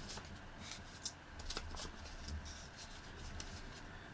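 Faint rustling of paper cutouts being handled and laid onto a tabletop, with a few small taps and clicks.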